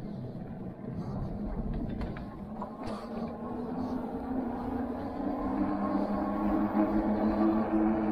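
Vamoose Mammoth dual-hub-motor fat-tire e-bike under way on pavement: a steady hum from its motors and tyres that grows stronger and louder over the second half, over a low rumble of wind on the microphone.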